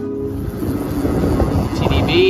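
Background guitar music that gives way about half a second in to a loud, rough rushing noise of wind on the microphone and road noise while riding a bicycle in traffic.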